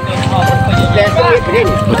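Music with long held notes and a voice over it.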